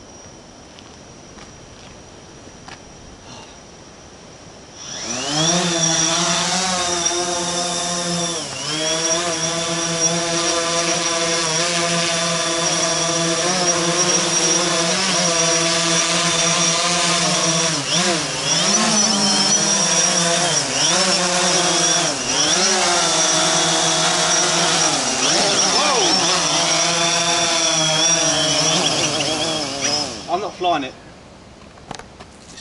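Quadcopter drone's propellers and motors spinning up about five seconds in, then a loud buzzing whose pitch wavers, dips and rises as the drone climbs, drifts and is steered back down. It flew with only six satellites, too few for a steady GPS hold, and was drifting out of control toward the trees. The buzz cuts off at the very end as it lands.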